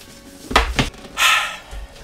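A cardboard subscription box being handled and set on a table: two sharp knocks just after half a second in, then a sigh.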